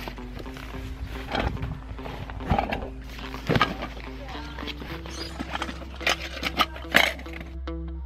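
Background music with held tones, under a series of sharp clicks and rustles as an Ortlieb waterproof roll-top pannier is unclipped from a bike rack, opened and unpacked. The loudest handling clicks come near the end, and the music carries on alone for the last moment.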